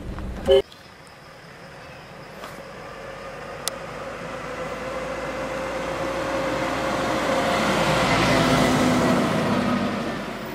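A brief car-horn toot about half a second in, then a Nissan pickup truck driving up toward and past the camera, its engine and tyre noise growing louder to a peak near the end and easing off slightly as it goes by.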